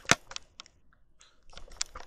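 A few sharp clicks and light taps: one loud click just after the start, a few faint ones, then a quick cluster about a second and a half in.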